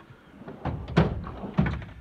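Metal tool-chest drawers on slides: a drawer slides shut and hits home with a thunk about a second in, and a second knock follows a moment later as the next drawer is pulled open.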